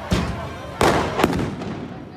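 Firecrackers going off: three sharp bangs in quick succession, over crowd noise.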